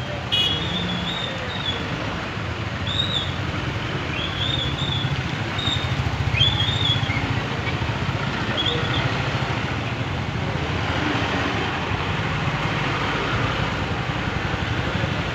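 Road traffic in a jam: vehicle engines running as a steady low hum under continuous road noise. Short high chirps recur every second or two through the first nine seconds.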